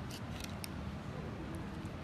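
Small makeup brush tapped into a pressed-powder highlighter palette: a few faint, light taps in the first second or so, over steady room hiss.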